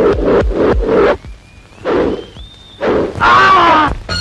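Film background score: fast, evenly spaced drum beats, then a thin high note that steps up in pitch, then a loud bending, wailing note near the end.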